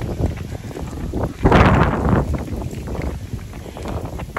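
Wind buffeting a phone's microphone, a constant low rumble with one stronger gust about a second and a half in.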